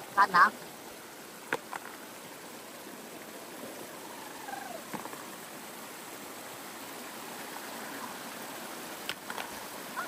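Shallow stream rushing steadily over rocks in a small cascade close by.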